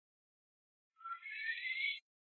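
Isolated vocal track from a rock song, silent at first, then about halfway through a faint, thin, high sound that rises in pitch and cuts off suddenly.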